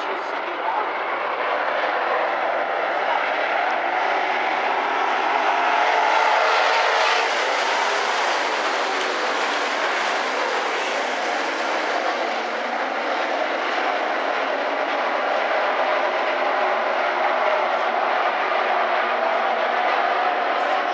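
A pack of dirt-track modified race cars running at speed around the oval, a steady, dense engine noise that swells to its loudest around the middle as the field comes through the turn nearest the stands.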